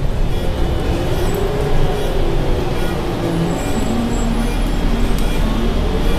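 Interior rumble of a city transit bus under way, with a steady low drone and a tone that slowly falls in pitch and then rises again near the end.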